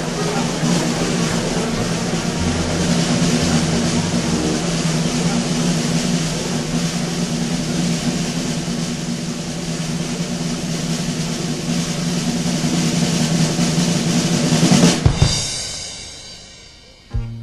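A long snare drum roll from a theatre band over a held low note. It swells slowly and ends with sharp hits about fifteen seconds in, then dies away.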